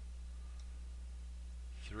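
Steady low electrical hum on the recording, a mains buzz made of a few even low tones.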